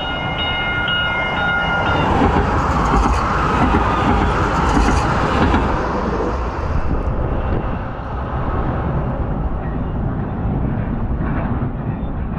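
Valley Metro light rail train going by close at hand, its horn sounding in a steady chord that stops about two seconds in. The rumble of the train follows, loudest a few seconds in and then easing off.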